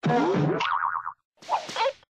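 Cartoon 'boing' spring sound effect with a fast wobbling pitch, lasting about a second, followed by a shorter sound effect about one and a half seconds in.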